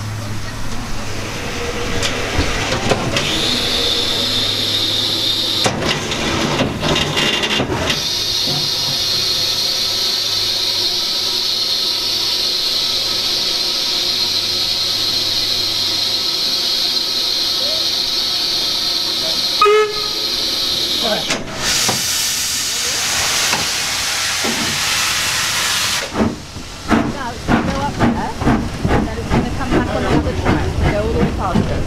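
Steam hissing steadily from an Austerity 0-6-0 saddle tank steam locomotive standing in steam. Near the end it moves off, with a run of quick exhaust beats and steam hissing from around the cylinders.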